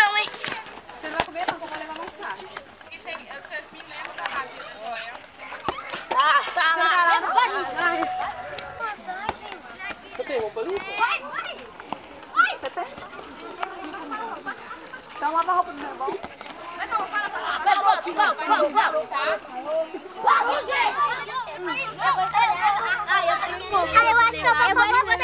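Children's voices calling and chattering during an outdoor street football game, with several voices overlapping.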